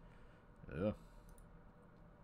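A single spoken "yeah", followed by a few faint, quick clicks from a computer.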